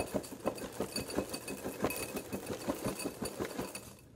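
Honey Nut Cheerios poured from the box into a bowl: dry cereal pieces landing in a steady stream of rapid, irregular clicks.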